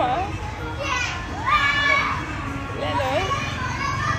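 Children's voices: high-pitched calls and chatter that rise and waver, over a steady low background hum.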